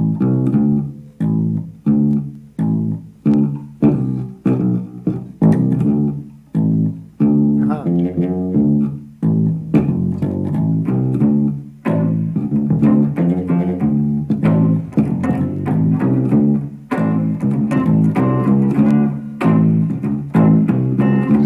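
Solo electric bass played fingerstyle: a simple bass line of short, separated notes on beats one and three, about two notes a second. From about seven seconds in the line gets busier and more connected, with more notes between the beats.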